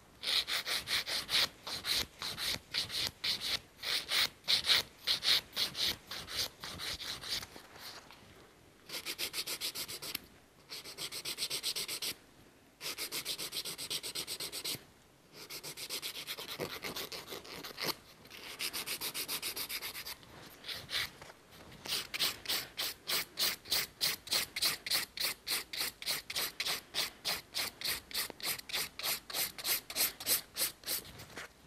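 Hand nail file rasping back and forth over a set acrylic nail extension to shape it: quick, even strokes, about four a second, broken by a few brief pauses.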